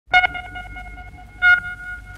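Two sonar-like electronic pings about a second and a quarter apart, each a single steady pitch that rings on and slowly fades, opening a 1970s reggae recording.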